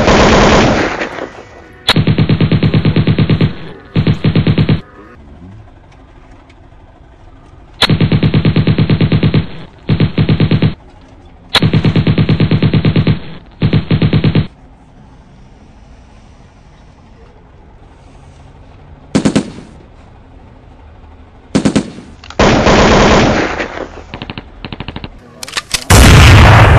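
Loud bursts of rapid, evenly spaced machine-gun-like fire, about seven in all, each lasting one to two seconds with short quiet gaps between them.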